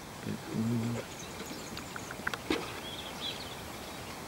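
A metal splicing fid worked through braided eight-strand rope, with a few light clicks about two and a half seconds in. A man gives a brief low hum near the start, and faint bird chirps come later.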